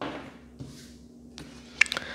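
Tarot cards being handled: a soft swish as a card is moved and laid on the cloth-covered table, then a couple of sharp light clicks near the end.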